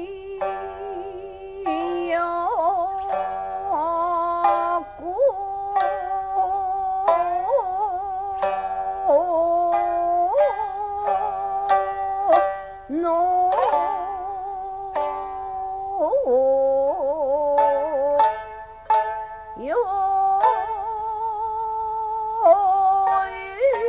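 A woman singing jiuta in long, wavering, melismatic notes with slides between pitches, accompanied by sharp plucked strokes of a shamisen (sangen) in honchōshi tuning.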